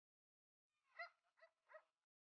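Three short, high-pitched animal calls in quick succession, starting about a second in, faint.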